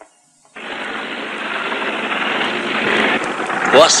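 Animated sound effect of a small car's engine running as the car approaches. It is a rough, noisy engine sound that starts about half a second in and slowly grows louder. A voice begins near the end.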